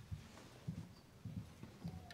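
Faint, irregular soft thumps, about five in two seconds, like footsteps and light knocks from people moving around the altar, with a few faint clicks.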